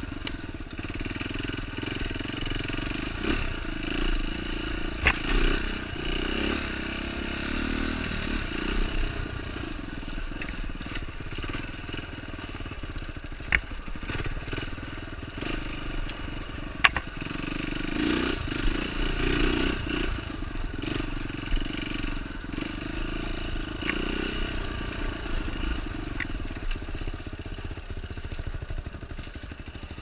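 Dirt bike engine running, its revs rising and falling, with a few sharp knocks along the way.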